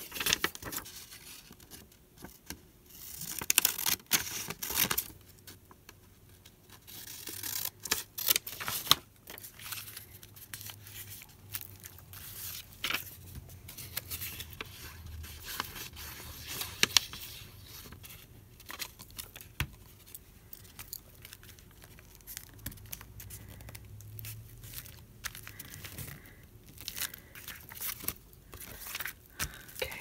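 Paper being handled and pressed down on a craft table: irregular rustling, crinkling and scraping with sharp light taps, louder in a few short bursts during the first ten seconds.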